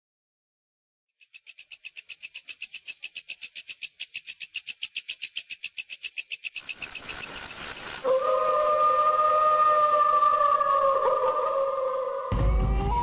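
Eerie soundtrack intro: a rapid high-pitched pulsing chirr, about nine pulses a second, gives way about six seconds in to a sustained drone with two wavering tones.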